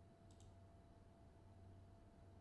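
Near silence: room tone with a low hum, and two faint computer mouse clicks close together about a third of a second in.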